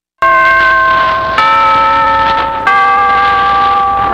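Three struck chime notes, each ringing for just over a second. The second note is the highest and the third a little lower: the chime that opens a vintage radio broadcast.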